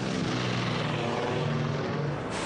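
Propeller aircraft engines running with a steady drone.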